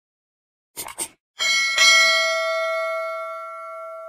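Subscribe-button animation sound effect: a quick run of three mouse clicks, then a bright notification bell chime, struck twice in quick succession, that rings on and slowly fades.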